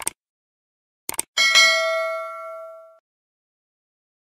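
Subscribe-button sound effect: a short click, then quick clicks about a second later, followed by a notification-bell ding that rings and fades out over about a second and a half.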